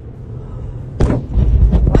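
Ammunition depot explosion heard from inside a car: a sudden sharp blast about a second in, followed by a loud, deep low rumble.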